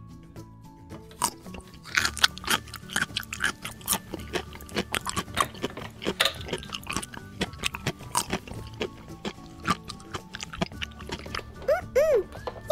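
Soft background music with many short crackling, crunching clicks as a plastic spoon scoops and squishes play-food peas.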